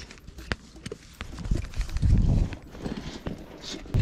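Irregular sharp clicks and knocks from a horse's saddle tack being handled during unsaddling, with some low thumps between about one and a half and two and a half seconds in.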